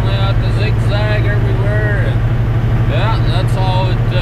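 Steady low drone of a semi truck's diesel engine, heard from inside the cab while driving at highway speed.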